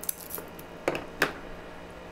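Small hand cutters snipping the plastic inner coating off an outdoor Cat 6 cable: a few short, sharp snips, the clearest two close together about a second in.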